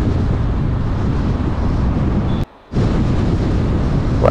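Steady low rumble of a car's road and wind noise at highway speed. It cuts out abruptly for a fraction of a second about two and a half seconds in, then resumes.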